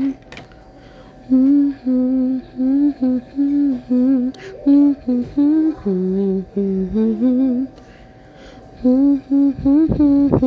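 A woman humming a simple home-made tune in short held notes that step up and down, pausing briefly near the start and again about eight seconds in.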